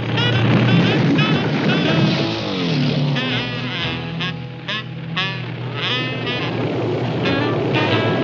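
Cartoon soundtrack: jazzy music playing over a small minibike engine sound effect, with a falling slide in pitch about two and a half seconds in.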